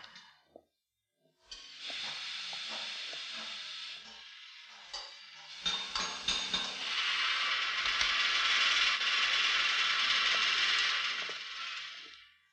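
Small metal car parts clicking and rattling as they are handled on workshop shelves, over a steady hiss. It starts after a short silence, dips briefly, and grows louder about seven seconds in before fading near the end.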